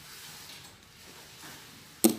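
Faint steady hiss of room tone, with no distinct sound.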